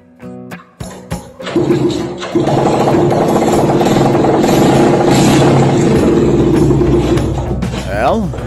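Small motorcycle engine, bare of its bodywork, being kick-started: a few clicks, then it catches about two seconds in and runs loudly at a steady pitch. The running cuts out near the end as the engine bursts into flames.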